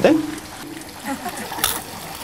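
Brief, soft fragments of conversation over a steady background hiss, with one short sharp click about a second and a half in.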